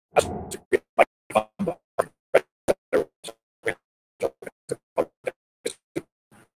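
A man's speech over a video call, chopped by a failing connection into short clipped fragments, about three a second, with dead silences between: the audio is really, really choppy and unintelligible.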